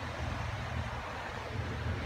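Steady low hum with faint even background noise, with no distinct knocks or clicks.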